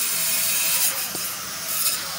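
Rubbing and rustling handling noise on the phone's microphone as it is moved, with two short scrapes and a single click.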